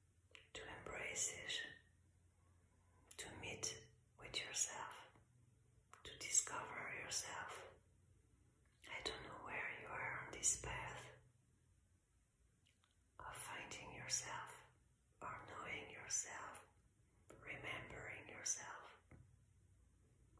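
A woman whispering softly in short phrases, with pauses of a second or two between them.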